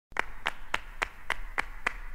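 Steady rhythmic handclaps, a little under four a second, opening an Italo disco dance track played from a vinyl record.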